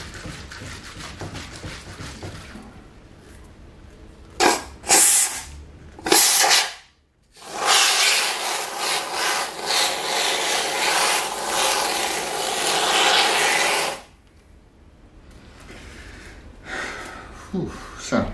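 Aerosol can of expanding polyurethane foam dispensing through its applicator straw: a few short squirts, then a steady hiss lasting about six seconds as foam is sprayed into a box.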